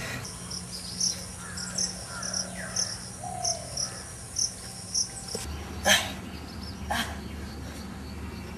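Insects chirping in the surrounding trees: a steady high buzz with short high chirps repeating every half second or so. Two brief rustles come about a second apart near the end.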